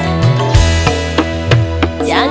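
Pop koplo music in an instrumental passage between sung lines: sharp drum strokes over steady bass notes and plucked-string instrument lines.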